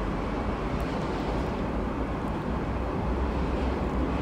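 Steady background noise with no speech: a low rumble and a light hiss, unchanging throughout.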